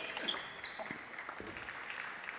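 Table tennis ball struck back and forth in a rally, a series of sharp clicks off the bats and the table, some with a short ringing ping, in the echo of a large hall.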